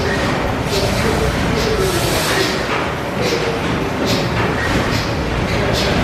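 Stationary steam engine running steadily, its mechanical noise marked by a regular beat of strokes.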